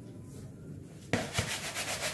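Dry bread crumbs rustling and scraping in a plastic bowl as the bowl is swirled to roll a chicken ball through them. The rustle starts suddenly about a second in, with a light knock just after.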